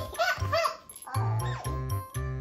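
Two bursts of short, high, bending squeaky calls from an Asian small-clawed otter, over background music with a steady beat.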